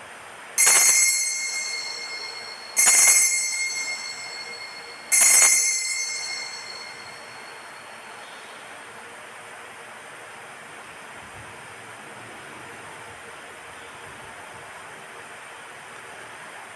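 Altar bell struck three times about two seconds apart, each ring fading out slowly, marking the elevation of the consecrated host at Mass.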